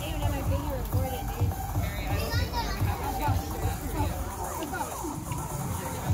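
Background music with a steady low beat, about two beats a second, under people's voices and chatter.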